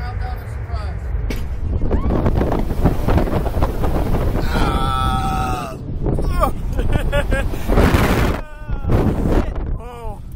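Rushing wind buffeting a ride-mounted camera's microphone as a SlingShot reverse-bungee capsule is launched, growing loud about two seconds in. A rider's long strained cry comes about halfway through, with shorter yells and groans after.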